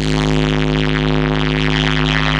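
Loud electronic DJ music played through a large sound system. A held synthesizer chord over a deep, sustained bass starts abruptly, replacing the melody that came before.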